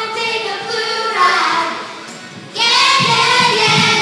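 A large group of children singing a song together. About two seconds in the singing drops off briefly, then comes back louder.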